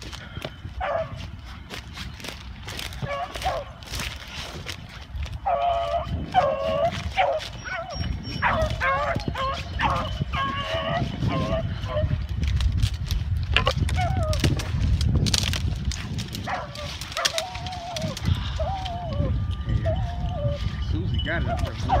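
Beagles baying on a rabbit's trail, a run of bawling calls for several seconds from about five seconds in and again near the end, the sign that the pack is on the scent. Branches crackle and brush rustles close by, with a rough low rumble through the second half.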